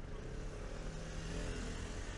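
A motor vehicle's engine passing on a nearby city street, growing louder over the general hum of street noise.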